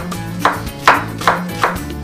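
Knife chopping an onion on a wooden cutting board: about four sharp strokes, two or three a second, over background music with steady held notes.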